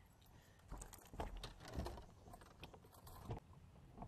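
Faint scattered clicks and light knocks, with low bumps about a second and two seconds in and one sharper knock near the end.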